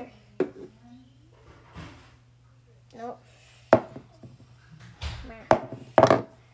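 Scattered knocks and a few sharp thumps and clatters of objects being handled, with brief bits of a child's voice.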